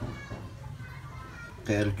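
Faint background voices in the distance, then a man begins speaking near the end.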